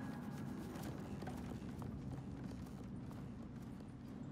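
Light hollow clip-clop knocks of a small wooden doghouse hopping along the floor, a few irregular steps over a steady low rumble.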